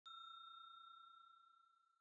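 A single faint, bell-like electronic ding struck at the very start, its tone ringing on and fading away over about a second: the chime that goes with a channel logo appearing.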